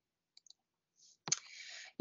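Near silence with a few faint ticks, then a sharp click about a second in, followed by a short breathy hiss like an in-breath just before speech resumes.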